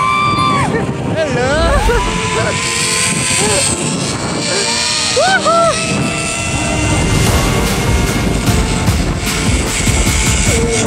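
Zipline riders whooping 'woo-hoo' again and again as they slide down the cable, each call rising and falling in pitch, over a low rumble of wind on the microphone that sets in about a second and a half in.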